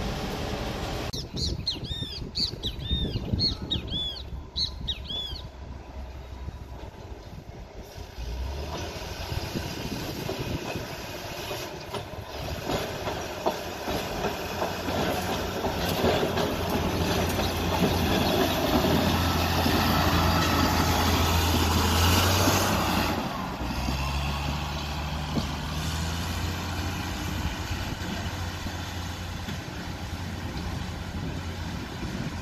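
Rail maintenance vehicle hauling flat wagons passes close on the track, its engine running and its wheels rumbling and clacking over the rails. The noise builds, is loudest around two-thirds of the way through, then eases to a steady low engine drone as the vehicle pulls away. High squealing arcs are heard near the start.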